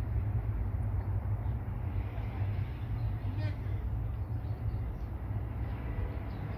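Steady low rumble of the city outdoors, with faint distant voices and a brief high chirp about three and a half seconds in.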